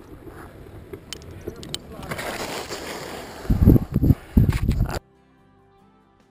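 Wind buffeting the camera microphone, building from about two seconds in to heavy low rumbling gusts, after a few sharp handling clicks early on. It cuts off abruptly near the end to soft background music with held notes.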